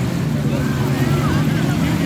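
Jet ski engine running with a steady low drone.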